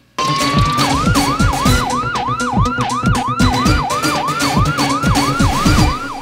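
News-programme intro jingle with a siren sound effect. A steady tone holds briefly, then wails up and down about three times a second over music with heavy, falling bass beats.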